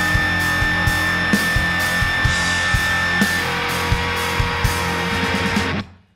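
Loud live rock band: drums on a Gretsch kit keeping a steady beat under cymbals, with distorted electric guitars, bass and piano, and a high held guitar note through the first half. The whole band stops abruptly near the end as the song finishes.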